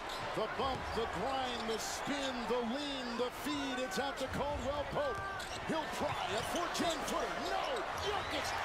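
Basketball game broadcast audio: arena crowd noise with a ball being dribbled and sneakers squeaking on the hardwood during live play, many short gliding squeaks through the whole stretch.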